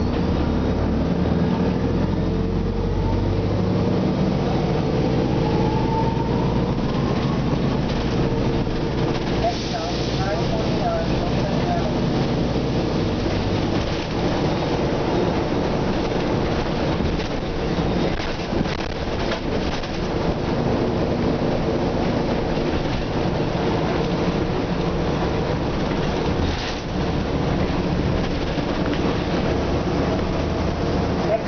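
Nova Bus RTS transit bus's diesel engine heard from inside the passenger cabin while the bus is under way, with a deep, steady engine note. A whine rises in pitch over the first few seconds as the bus gathers speed, and short rattles and knocks come through the body.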